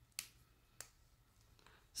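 Two light plastic clicks in near silence, a sharper one near the start and a fainter one about half a second later: a Tris Mega Hidrocolor felt-tip marker being picked up and uncapped.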